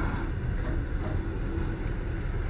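Running noise of a passenger train carriage heard from inside, a steady low rumble as the train moves off slowly.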